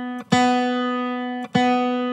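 Open B string of an electric guitar picked three times at the same pitch. The ringing note is briefly damped and picked again about a third of a second in and again about a second and a half in, and each note dies away slowly.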